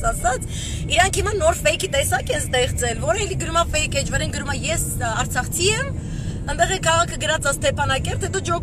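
A woman talking continuously inside a moving car, over the steady low rumble of the car's road and engine noise in the cabin.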